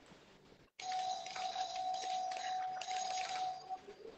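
A steady electronic tone, held for about three seconds and starting just under a second in, from a hotel room's digital keypad door lock.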